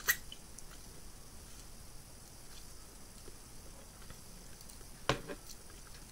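A person sucking and chewing a lemon wedge. There is one short, sharp wet mouth sound at the very start, faint chewing after it, and another smack about five seconds in.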